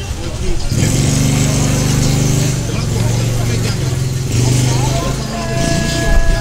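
A motor vehicle engine running close by: a steady low drone that drops in pitch a little under halfway through and rises again later, over general street noise.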